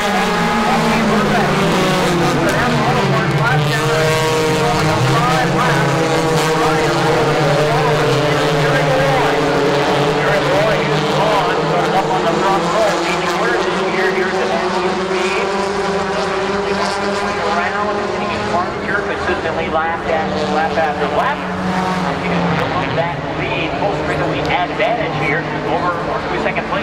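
Several stock-car engines racing around a dirt oval at once, their pitch rising and falling as the cars circle the track.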